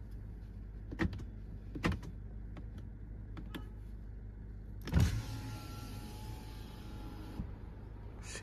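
Driver's-door power window of a 2023 Changan Ruicheng PLUS: a few switch clicks, then a click and the window motor running steadily for about two and a half seconds before it stops abruptly, lowering the glass. A low steady hum sits underneath.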